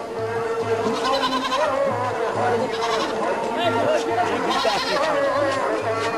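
Devotional kirtan: voices singing over a steady held drone note, with a drum beating in a repeating pattern and shimmering cymbal-like bursts.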